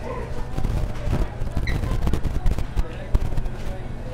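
Busy restaurant room noise: a steady low hum under faint background chatter, with scattered small knocks and clicks of tableware and eating close to the microphone, and one brief high clink about halfway through.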